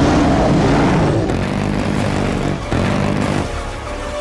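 Action-film soundtrack: dramatic music mixed over battle sound effects, with jet engine noise from a low-flying attack aircraft.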